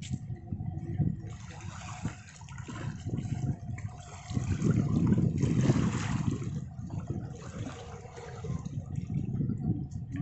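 Water sloshing and lapping against a concrete seawall, irregular and loudest about halfway through.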